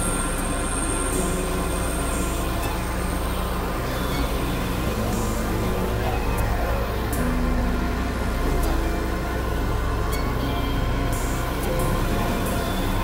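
Experimental electronic drone music: layered synthesizer tones held and shifting every second or so over a steady low hum, with a noisy, industrial texture and no beat.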